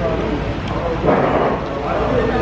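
Indistinct background voices over a steady low hum, with a louder, short noisy burst about a second in.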